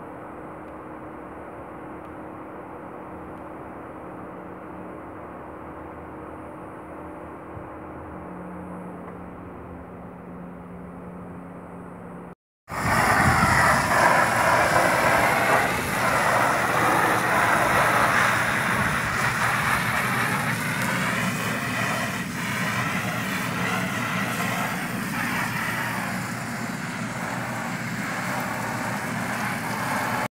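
A quieter steady hum for about the first twelve seconds, then after a cut a much louder steady drone from the electric blower keeping an inflatable water slide inflated, with water from a garden hose running and splashing onto the slide's vinyl tarp.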